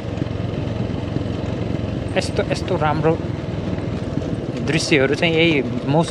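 Motorcycle engine running steadily at an even, low pitch while the bike is ridden, with a man's voice speaking briefly twice over it.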